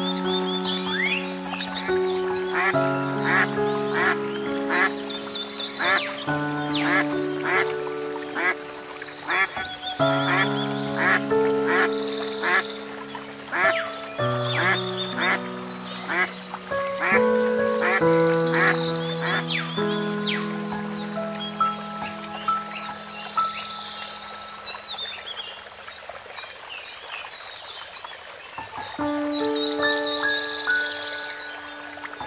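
Soft instrumental background music playing a slow melody, with a mallard duck quacking over it.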